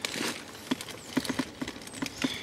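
Light, irregular clicks and taps of handling noise while fingers work a smartphone's touchscreen in a leather wallet case.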